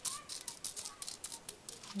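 Dry zinnia seeds being pushed and spread with a fingertip across a thin disposable plastic plate: a run of light, irregular clicks and taps.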